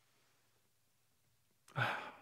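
Near silence, then a man's short breathy sigh near the end.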